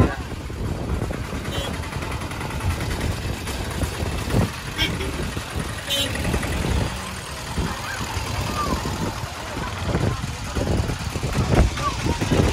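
Traffic noise from a jam of auto-rickshaws, with engines running low and steady and people's voices in the background.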